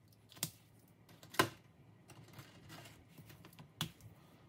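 Felt-tip marker colouring in letters on a paper sheet: faint scratching strokes with three sharp clicks, the loudest about a second and a half in.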